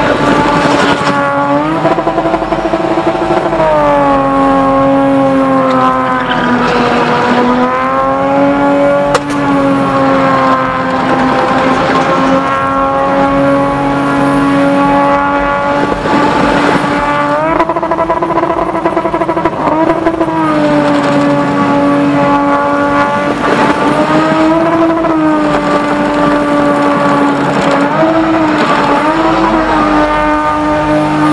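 BMW E30's engine held at high revs through a spinning routine, mostly steady with brief dips and rises in pitch every few seconds as the throttle is worked. The rear tyres spin and squeal under it.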